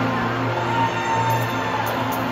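Live pop-rock band playing the instrumental intro of a song: held guitar and keyboard notes over a steady bass note, heard from the audience.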